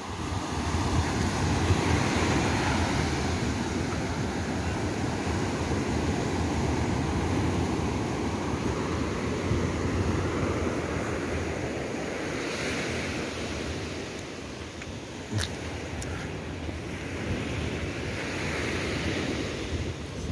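Surf breaking and washing up onto a sandy beach: a continuous rushing wash that swells and eases, with wind buffeting the microphone. A single sharp click about fifteen seconds in.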